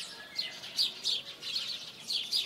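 Birds chirping: a run of short, high chirps, each falling in pitch, about three a second.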